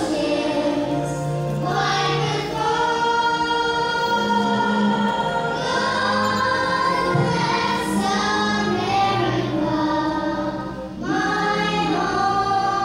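Young children singing a song together, led by two girls' voices at a microphone, in long held phrases over a musical accompaniment. There is a brief breath between phrases shortly before the end.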